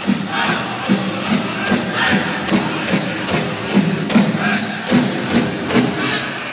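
Powwow drum group singing a grand entry song: one large drum struck together in a steady beat about two and a half times a second under high-pitched group singing, with the crowd around it.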